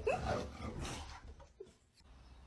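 A dog giving a few short, rising whining cries at the start, which then tail off and fade out.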